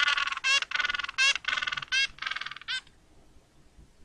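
Recorded penguin calls: a quick run of about eight high-pitched calls over nearly three seconds, then they stop.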